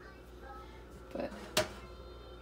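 A single sharp click about one and a half seconds in, over a low steady hum, with a brief spoken word just before it.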